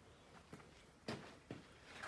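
Near silence: quiet room tone with three or four faint short knocks or taps.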